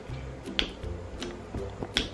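Fingernails clicking against the hard plastic shell of a toy capsule as it is pried at the seam: a few short, sharp clicks. The capsule is hard to open and does not give.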